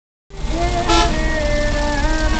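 Bus engine and road rumble heard inside the cabin, with music playing over it as held notes that change pitch every second or so. A short sharp noise comes about a second in.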